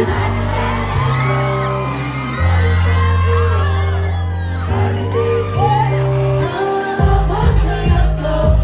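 A live R&B/hip-hop song played through a concert PA in a large hall: a female vocalist sings a gliding melody into a handheld microphone over long, deep bass notes. A drum beat comes in about seven seconds in.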